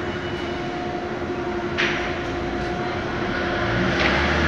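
Factory roller machinery running with a steady drone and hum. A sudden hiss starts about two seconds in.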